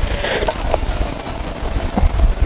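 A large knife slicing through a steak seared directly on the coals, on a wooden cutting board, with a short hissing stroke just after the start and a steady low rumble underneath.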